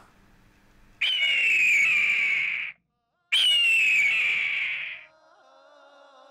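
Shofar (ram's horn) sounding two long blasts, each lasting under two seconds with a short break between them. Each blast opens slightly high and settles a little lower. Faint music comes in near the end.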